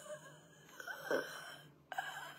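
A woman's breathy exhale during a pause in her talk, with one short strained vocal sound about a second in.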